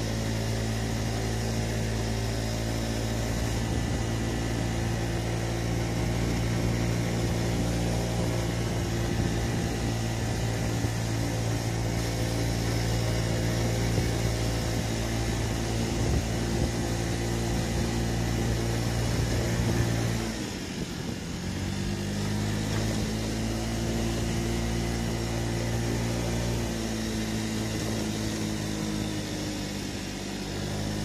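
Honda Tact scooter's small single-cylinder engine running steadily under load while climbing a mountain road, with wind and road noise. About twenty seconds in the engine note drops sharply as the throttle is eased, then picks back up, and it dips briefly again near the end.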